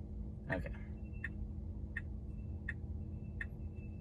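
Car turn-signal indicator ticking steadily inside a Tesla Model 3's cabin, about three ticks every two seconds, over a low steady hum. A faint high thin tone comes and goes between the ticks in the second half.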